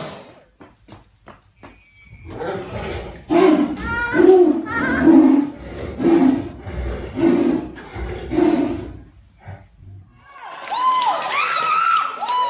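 Two tigers fighting, giving loud rough roars and snarls about once a second. Higher-pitched human voices come in near the end.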